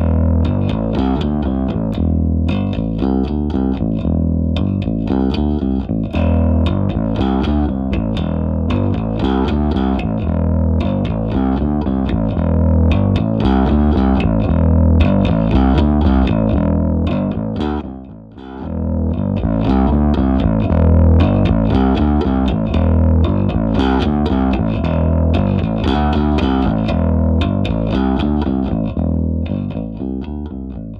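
Electric bass guitar played through a Kasleder Token bass booster/overdrive pedal, a Timmy-style soft overdrive, giving a lightly driven rather than heavily distorted tone. The bass plays a continuous run of plucked notes, with a short break about 18 seconds in.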